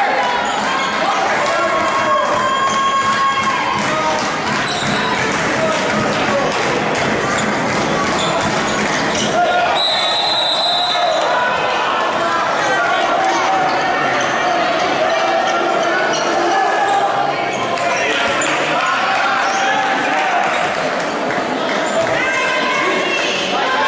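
Handball game in a large sports hall: the ball bouncing on the wooden court and players' voices shouting, all echoing. A short high whistle blast sounds about ten seconds in.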